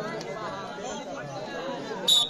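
Many voices talking at once, a background babble of spectators and players around the court.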